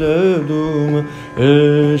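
A male voice singing a Hindustani classical vocal line, the opening dhamaar in raga Shree, with slow gliding ornaments between notes. It dips briefly about a second in, then a new long held note begins at a lower pitch.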